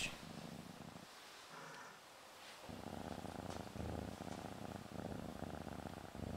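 Domestic cat purring faintly, a fine steady rumble that drops away for about a second and a half near the start and then resumes. The cat is relaxed and comfortable under the hands.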